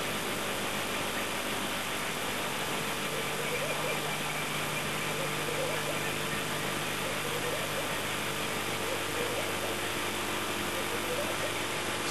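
Steady low hum of a game-drive vehicle's engine idling, with a constant background hiss.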